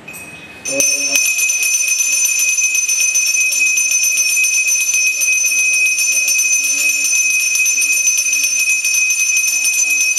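A puja hand bell (ghanta) rung rapidly and without a break during a Hindu worship offering, a steady high ringing that comes in loud about a second in.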